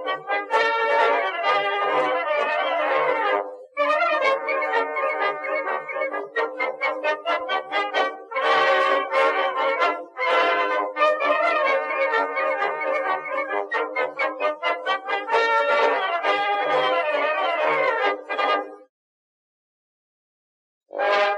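Brass band music with trumpets and trombones over a steady low beat. It dips briefly about four seconds in and stops about a second before the end.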